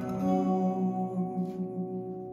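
Final chord strummed on an acoustic guitar and left to ring out, slowly fading as the song ends.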